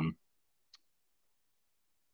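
The end of a man's spoken "um", then a single faint click about three-quarters of a second in, then silence.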